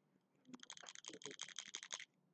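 A faint, quick run of light clicks, about eight a second, starting about half a second in: keys or fingertips tapping, like typing on a computer keyboard.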